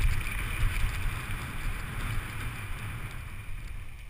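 Wind buffeting a GoPro's microphone during a fast mountain bike ride, over the steady hiss of the tyres rolling on rough asphalt, with a few faint rattles from the bike. It gets quieter near the end.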